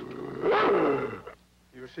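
A Bouvier des Flandres dog growling for about a second, loudest about half a second in and then dying away. It is a fearful warning growl at the people standing over it.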